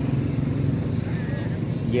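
A small engine running steadily at idle, a continuous low hum.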